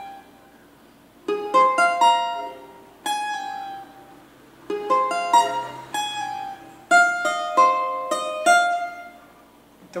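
Cavaquinho picked note by note, playing a short arpeggio on an A-flat 6/9 chord: after about a second of quiet, four quick runs of plucked, ringing notes with brief pauses between them.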